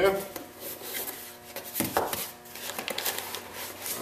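Cardboard parts box being handled on a workbench: rustling and scraping of cardboard as its flaps are pulled open, with a couple of sharp knocks about two seconds in.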